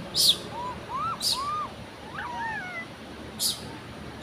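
A bird's sharp, high chirp that sweeps downward, given three times, with several softer rising-and-falling calls between them.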